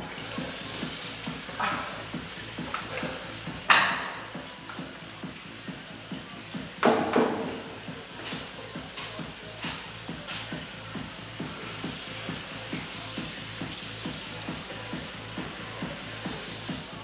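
Water running from a basin tap into a washroom sink, with two sharp knocks or splashes about four and seven seconds in. Soft music with a steady low pulse runs underneath.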